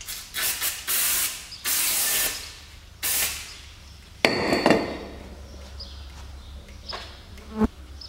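Aerosol spray can hissing in several short bursts onto a car's rear brake disc hub, followed about four seconds in by a sharp metallic clank that rings briefly, and a short knock near the end.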